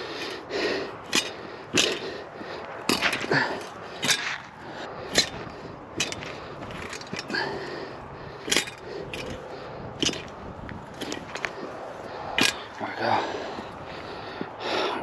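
A hand tiller's metal tines scraping and crunching through hard, rocky clay soil and tearing at roots, with irregular sharp clicks and scrapes.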